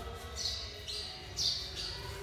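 A small bird chirping: four short, high chirps in quick succession, each falling in pitch.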